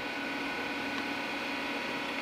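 Steady hum and hiss with faint, constant high whining tones, the room tone of powered-on electronic test equipment on a workbench.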